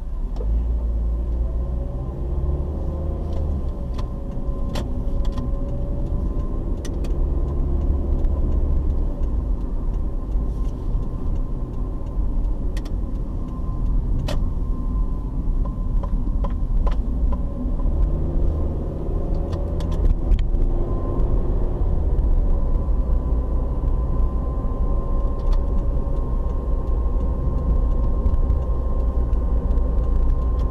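Car cabin noise while driving: a steady low engine and road rumble, with the engine pitch rising and falling as the car speeds up and slows. Scattered light clicks and a faint steady whine in the second half sit on top.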